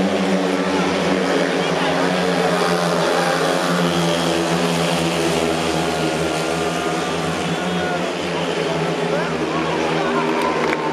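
Speedway motorcycles, 500 cc single-cylinder methanol engines, racing round a dirt oval: a steady, loud engine drone whose pitch slowly rises and falls as the bikes go through the bends and straights.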